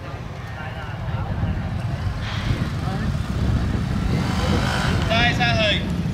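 Motorcycle engine revving and easing off as the bike is ridden through a tight cone course, under a heavy low rumble that grows louder after the first second. A short high-pitched voice calls out about five seconds in.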